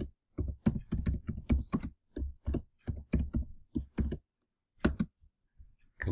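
Typing on a computer keyboard: a run of quick keystrokes, about five a second, for roughly four seconds, then a pause and a couple more key presses near the end.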